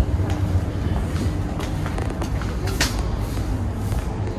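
Showroom background noise: a steady low rumble with faint distant voices and a few light clicks.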